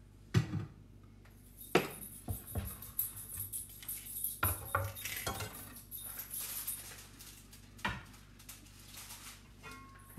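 Kitchen clatter: a chef's knife and dishes set down on a wooden cutting board and countertop, making several separate knocks and clinks. The loudest is about half a second in.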